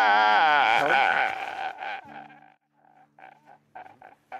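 A man wailing as he cries: one long, loud, wavering wail that breaks up about two seconds in, then a run of short, quieter sobbing gasps.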